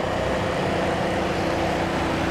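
A steady engine hum: an engine running at constant speed, with a faint, unchanging tone above the low rumble.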